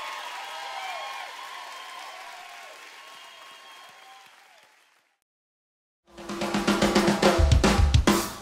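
A live band's final chord and cymbals ringing out and fading, with a crowd cheering, then a second or so of dead silence. About six seconds in, a drum kit starts a loud, fast passage of bass drum, snare and cymbal strokes.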